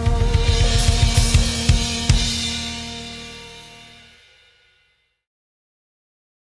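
Canopus drum kit played: a run of strikes on bass drum, snare and cymbals ends in a final hit about two seconds in. The drums and cymbals then ring out with a sustained tone and fade to silence over about two seconds.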